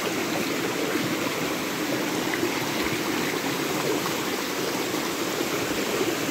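Shallow rocky stream rushing over stones: a steady wash of running water.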